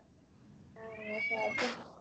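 A domestic cat meowing once: a single drawn-out meow of about a second, beginning a little after the middle, its pitch rising and falling back before it stops.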